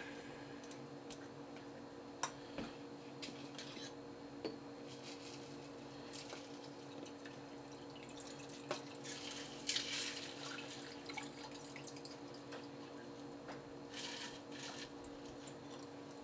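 A shaken drink poured from a metal cocktail shaker over ice into glasses: faint trickling of liquid with a few light clicks. The pour is heard most clearly about nine to ten seconds in and again near the end.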